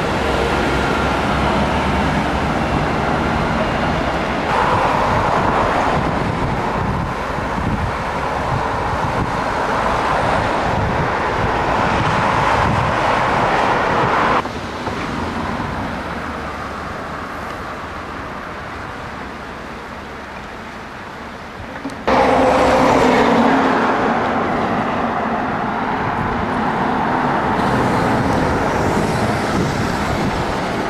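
Road traffic: cars driving past on a busy road, a steady noise that drops suddenly about halfway through and comes back louder just as suddenly later on.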